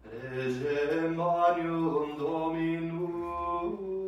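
Male voice chanting a liturgical office in slow held notes that step from pitch to pitch. It begins suddenly out of near quiet.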